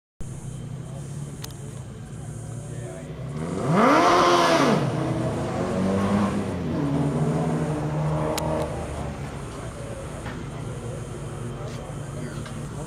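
Suzuki Hayabusa motorcycle engine in a small open-wheel race car running at low revs. About four seconds in it is blipped sharply up and back down, the loudest moment, followed by a few smaller revs as the car rolls slowly along.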